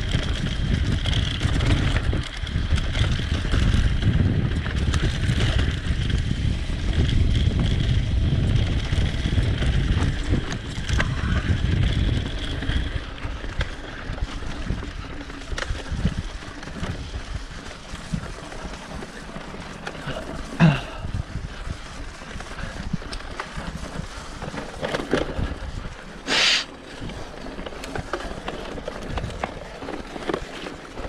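Mountain bike rolling along a dirt forest trail: wind on the microphone and tyre and frame rattle, loud for the first dozen seconds, then quieter with scattered knocks. Two short sharp noises cut through it, the louder about three-quarters of the way in.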